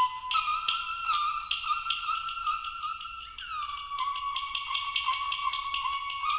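Banhu, the bright, nasal-toned Chinese bowed fiddle, playing a folk melody in held notes with a downward slide in pitch about three seconds in, over sharp taps keeping a beat about two and a half times a second.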